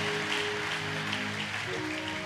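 Electronic keyboard holding soft sustained chords, shifting to a new chord near the end, with scattered hand claps.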